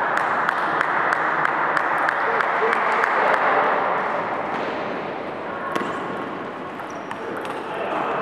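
Table tennis balls clicking sharply and irregularly off paddles and tables, many hits in quick succession, over a steady murmur of voices.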